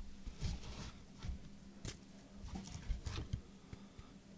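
Faint handling noises: soft clicks and rustles as trading cards in hard plastic cases are picked up and moved around by hand.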